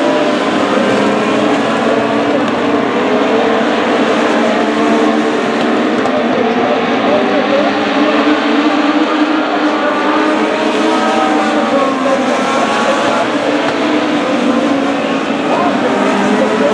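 Several Legends race cars running together on a dirt oval, their motorcycle engines' notes overlapping and rising and falling in pitch as they circulate.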